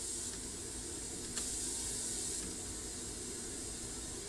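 Pink-noise test signal playing through a Marantz 3800 preamplifier as a steady hiss. A little over a second in, a faint click comes as the 4 kHz treble turnover switch is pressed, and the hiss turns brighter in the top end for about a second before settling back.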